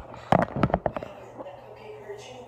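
Handling noise from a phone camera being moved and set down: a quick run of about half a dozen knocks and bumps in under a second, then quieter.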